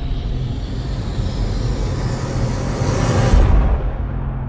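Logo-intro sound design: a rushing noise swell that builds to a peak a little past three seconds in, then falls away, over a steady low drone.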